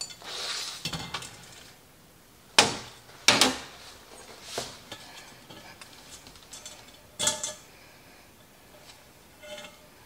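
Wire cooling racks and metal cake pans clinking and clanking as cake layers are flipped out of the pans onto the racks. There is a short scrape at the start, then a few sharp clanks, the loudest about two and a half and three and a half seconds in, and another around seven seconds.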